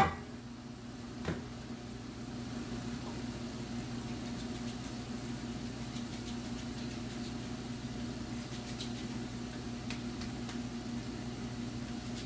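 Festival dumplings frying in a pan of shallow oil: a faint steady sizzle with scattered small pops, over a steady low electrical hum. A short knock sounds at the start and another about a second in.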